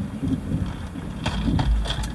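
A low rumble that swells near the end, with a few faint short rustles over it.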